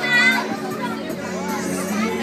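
Background music under people talking in a group, with a high voice calling out briefly at the start.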